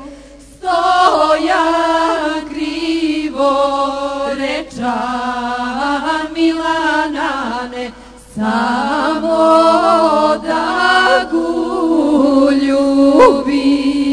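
Unaccompanied chant-like singing in long held phrases, breaking off briefly twice, about half a second in and about eight seconds in.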